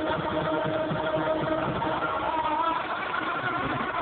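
Live gospel band music: a drum kit played busily under a sustained melody line that changes pitch about halfway through.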